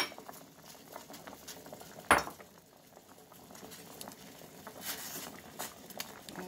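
Pork bones blanching in a stainless steel pot at a rolling boil, the water bubbling steadily to bring out blood and impurities. A sharp knock about two seconds in is the loudest sound.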